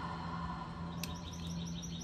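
A bird calls in a rapid run of short, high chirps, about eight a second, starting about a second in. A steady low hum runs underneath.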